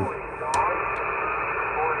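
A Uniden Grant XL CB radio's speaker playing received channel audio: steady static hiss with faint, garbled voices. A single sharp click about half a second in.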